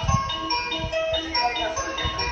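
Station platform chime melody: a short electronic tune of bright, bell-like notes played over the platform loudspeakers, the signal that a train is approaching.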